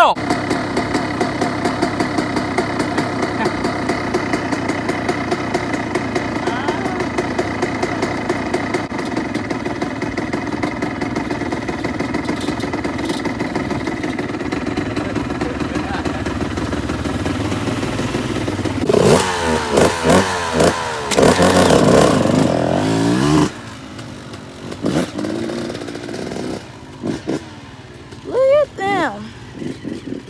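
A two-stroke engine running at a steady speed for most of the first eighteen seconds, then revving up and down several times before it drops away to a lower level.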